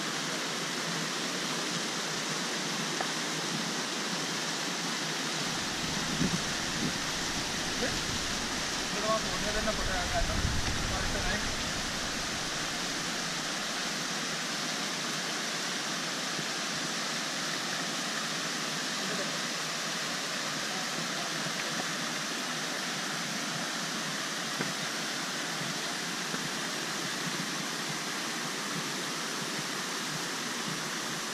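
Steady rush of a mountain stream running over rocks and small cascades. Between about six and twelve seconds in, a low rumble and a few brief louder sounds rise over it.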